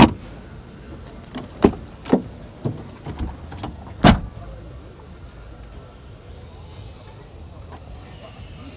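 Car door of a 1995 Opel being opened: a sharp latch click, then several knocks and clunks over the next four seconds, with the sounds easing off into a low steady background after that.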